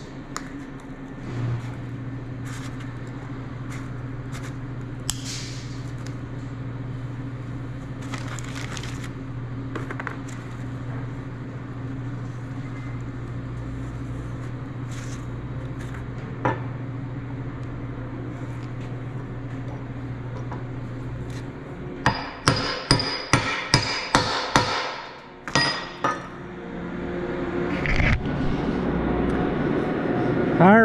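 Hydraulic cylinder gland parts and seals handled at a workbench, with scattered small clicks and clinks over a steady low hum that stops about two-thirds of the way through. A quick run of about a dozen sharp metallic taps follows over some three seconds, and a steady noise rises near the end.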